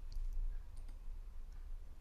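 Quiet pause with a few faint clicks over a low, steady background rumble.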